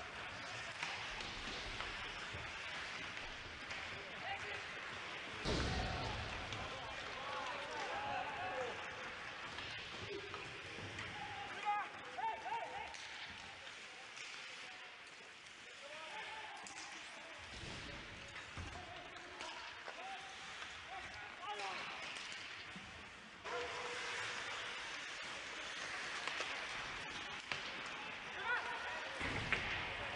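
Ice hockey rink sound from game footage: skates and sticks on the ice with a few sharp knocks about twelve seconds in, and faint voices. The sound changes abruptly twice as the footage cuts.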